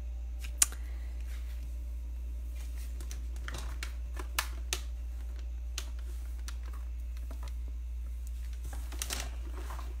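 Scattered light clicks and taps from handling the paper and phone, the sharpest about half a second in and a few more in the middle and near the end, over a steady low hum.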